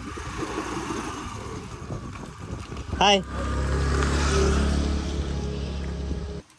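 Small petrol scooter engine starting about three seconds in and running with a steady low hum as the scooter moves off.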